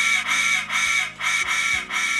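A TCS WOW Sound decoder in HO-scale U25C diesel models, heard through its small speaker, repeating a short honk-like tone about three times a second as its master volume is stepped down. A low steady engine sound runs underneath.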